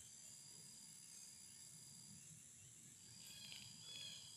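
Near silence: faint outdoor ambience with a thin, steady high-pitched drone in the background.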